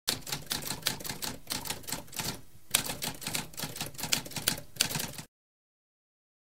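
Typewriter keys typing in a quick, steady run of clicks, pausing briefly about halfway through and stopping a little after five seconds in.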